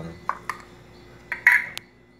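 A glass jar and its lid clinking as the jar is opened and the lid set down on a table: a few light clicks, then a louder clink with a short ring about one and a half seconds in.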